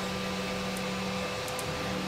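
A steady machine hum, with a few faint light clicks about a second in and again past halfway.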